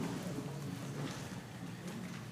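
Quiet meeting-hall background: faint murmur of distant voices over steady room noise, with people moving about.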